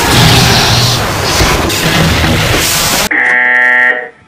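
Loud music mixed with noisy crashing sound effects, cut off abruptly about three seconds in by a harsh game-show 'fail' buzzer that sounds for about a second.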